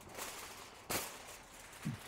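Sheet of aluminium foil crackling as it is handled for wrapping meat, with a few sharp crinkles, the loudest about a second in.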